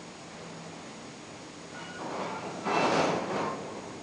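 A gust of wind rushing up, loudest about three seconds in and then easing off, as the wind turbines' charging current climbs.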